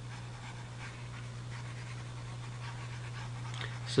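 A steady low electrical hum with faint background hiss, the recording's room and microphone noise.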